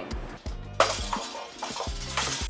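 Metal wire clothes-drying rack being folded shut, with a sharp metallic clatter about a second in, over background music.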